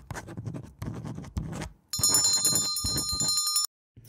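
Pen scratching on paper in short writing strokes for about two seconds, then a bright ringing chime for about a second and a half that cuts off suddenly.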